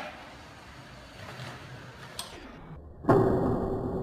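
Longboard wheels rolling quietly on concrete, then about three seconds in a sudden loud crash as the rider hits a metal sign pole and bends it, followed by a lingering rumble and hum.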